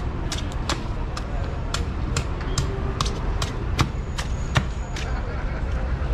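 A heavy knife chopping into a young coconut to open its top, a dozen or so sharp knocks at about two a second, over a low traffic rumble.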